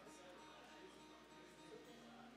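Acoustic guitar strings plucked softly and left ringing while the guitar is tuned, a few faint held notes.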